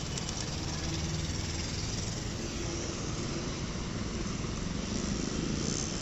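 Steady outdoor background noise, a low rumble with hiss and nothing distinct standing out.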